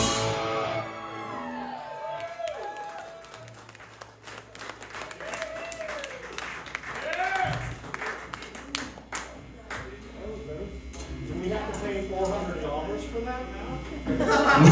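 A live rock song ends on a loud final hit. A quieter lull between songs follows, with scattered cheers, voices and clapping from the crowd and stray instrument notes and pitch bends from the stage.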